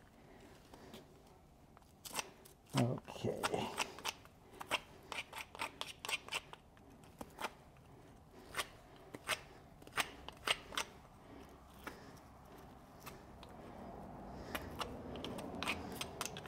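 A hoof pick scraping and flicking packed dirt and bedding out of the sole of a horse's hoof: a run of sharp, irregular scrapes and clicks.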